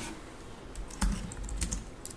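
A few scattered light clicks of typing on a keyboard, as a scripture passage is being looked up.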